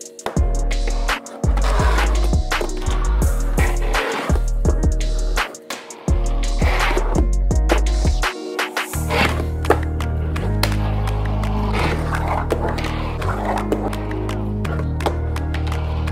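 Background music with a heavy, stepping bass line, over repeated sharp clacks of a fingerboard popping tricks and landing on cardboard ramps.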